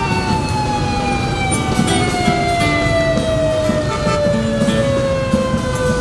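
A siren winding down, its pitch falling slowly and steadily, over the engines of many motorbikes in street traffic, with a few short horn beeps.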